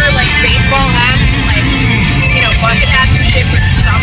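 Music with a wavering sung vocal line playing inside a moving car, over the steady low rumble of road noise.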